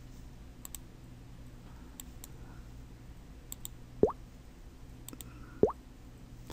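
Faint computer mouse clicks, each a quick double click, about every one and a half seconds, over a low steady hum. Two short pops that rise quickly in pitch stand out, about four and five and a half seconds in.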